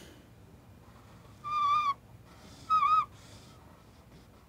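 Dry-erase marker squeaking on a whiteboard as a line is drawn: two short high squeaks, each about half a second long and about a second apart, the second wobbling in pitch.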